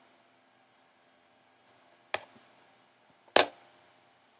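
Two sharp clicks or knocks about a second and a quarter apart, the second louder, as the small eyeshadow palette is handled between swatches.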